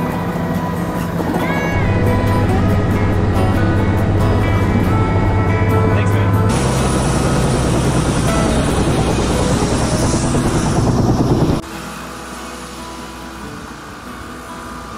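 Background music over helicopter noise: a steady low drone of rotor and engine, then a louder rushing rotor noise that cuts off suddenly near the end, leaving only the music.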